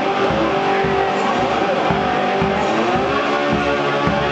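Homemade wine box guitar played slide blues style, the slide gliding up and down between notes, over a steady low thump keeping the beat.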